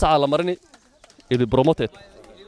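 A man's voice speaking in two short bursts of about half a second each, with a pause between.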